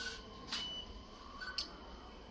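Two short sharp clicks in a quiet room, about half a second and about a second and a half in, the first followed by a faint brief high tone.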